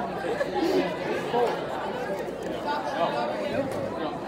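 Background chatter of many overlapping voices in a large room, with a brief laugh at the start.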